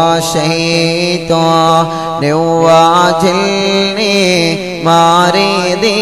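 Men chanting a mawlid devotional song through microphones, with long, ornamented sung lines that slide in pitch over a steady low held note.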